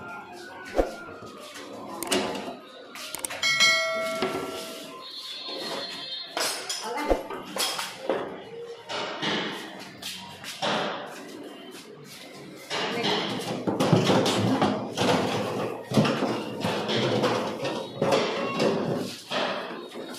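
Modular kitchen drawers being slid open and pushed shut, with several sharp knocks, under talking voices.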